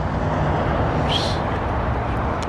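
Steady traffic noise from passing road vehicles, with a brief high chirp about a second in.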